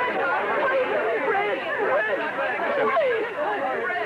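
Several voices talking over one another at once: steady, unintelligible chatter with no single clear speaker.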